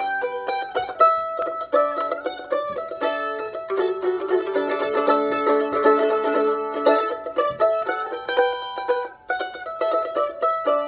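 Solo mandolin picked in a steady rhythm, mixing ringing chords and single-note lines in an instrumental introduction.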